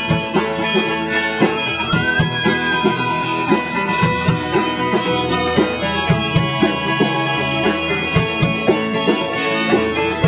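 Live acoustic band music: strummed acoustic guitars keep a steady rhythm under long held melody notes.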